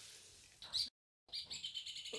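Birds chirping in the background with high, thin, steady notes, after a fading hiss and a brief gap of dead silence about a second in.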